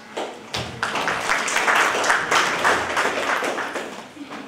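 Audience applauding, building about half a second in and fading near the end.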